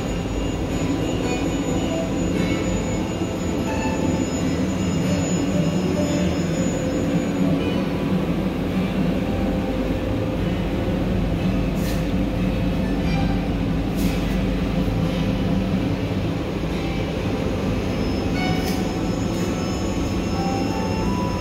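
Steady mechanical hum and rumble heard from inside an enclosed Ferris wheel capsule as the wheel turns, with a few faint clicks in the second half.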